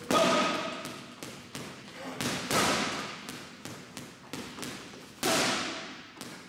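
Boxing gloves striking a Sting commercial-grade heavy bag: a steady run of light taps, a few a second, broken by three much louder blows, the single hard power shots of the drill.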